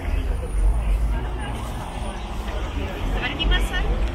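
Street crowd: mixed chatter of passers-by over a steady low rumble of city traffic, with a few louder voices near the end.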